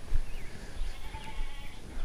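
A farm animal bleating once, about halfway through, with small birds chirping around it.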